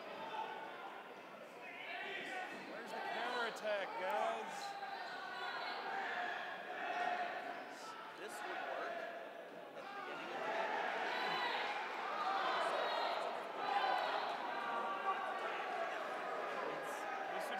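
Players' voices calling across a gymnasium, with dodgeballs bouncing and striking the hard court floor a few times, echoing in the hall.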